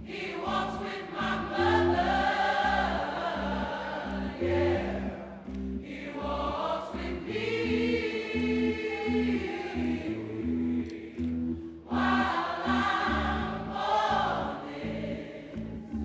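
Gospel choir singing in full voice over a live band with keyboards, drums and bass guitar. The voices break off briefly about six seconds in and again near twelve seconds, while the band holds steady low notes, and repeated notes pulse under the choir in the middle.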